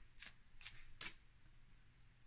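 A deck of tarot cards shuffled by hand, faint: three soft card flicks about 0.4 s apart in the first second or so.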